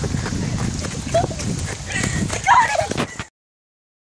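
Hurried footsteps on a leafy forest path, with rumbling noise on the microphone and short high voice calls. The sound cuts off suddenly a little past three seconds in.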